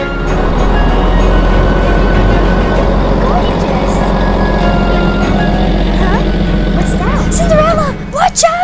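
Steady low engine rumble of a bus, a cartoon sound effect, under background music, with a voice shouting a warning near the end.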